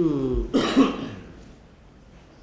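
A man coughs once about half a second in. It is a short, rough cough that cuts across the end of a spoken word.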